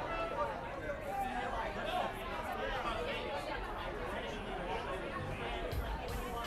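Indistinct crowd chatter between songs: many overlapping voices talking at once, with no single clear speaker. A steady held instrument tone stops just after the start.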